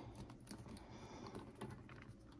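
Faint, scattered light clicks and taps of plastic action figures being handled and repositioned on a hard surface.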